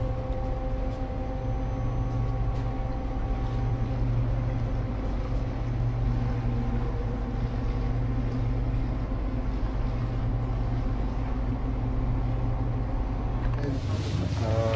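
Steady low drone of a ship's engine, with a few higher steady hums that fade out about four seconds in.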